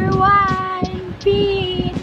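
A high, child-like singing voice holding two long, steady notes.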